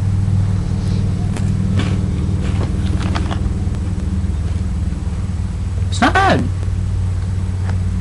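Faint crunches of a crunchy breadstick being chewed, a few short clicks in the first few seconds, over a steady low mechanical hum that is the loudest thing throughout. A brief vocal sound comes about six seconds in.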